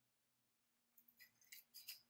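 Near silence, then from about a second in a few faint, high-pitched crackling ticks as thin 28-gauge craft wire is drawn out and handled.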